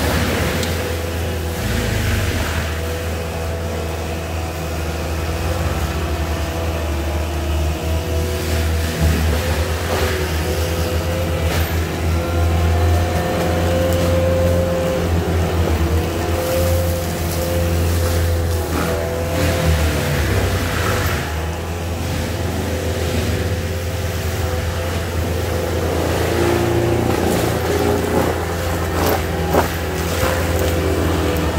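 ASV RT-120 compact track loader's diesel engine running at high, steady revs, driving a Fecon Bullhog forestry mulcher head with a steady whine. The whine dips briefly a few times, and a few sharp cracks come through as the mulcher works.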